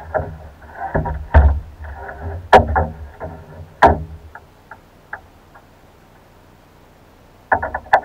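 Wooden rowboat being rowed: three sharp knocks about a second and a quarter apart from the oars working in their oarlocks, with water splashing against the hull. A few seconds of quieter gliding follow, then another cluster of knocks near the end.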